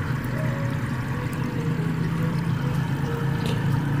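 Aquarium aerator running in a bucket of water: a steady low hum with the bubbling trickle of air rising through the water.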